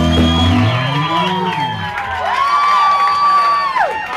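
A live rock band with guitars and drums lets its last notes ring out and fade over the first couple of seconds, while the audience whoops and cheers over it.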